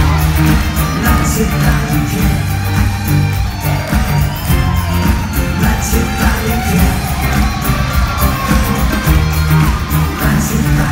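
Loud live pop music from a band with heavy bass and steady drums and cymbals, a woman singing over it into a microphone.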